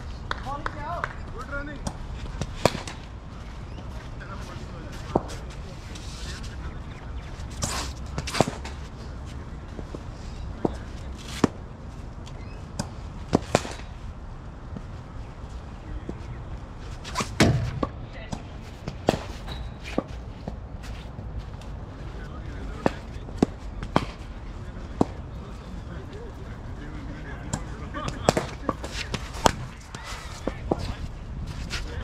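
Sharp knocks of cricket balls striking bats and bouncing on the artificial net pitch, scattered irregularly, with one louder, deeper thud about seventeen seconds in. Faint voices and a low steady rumble lie beneath.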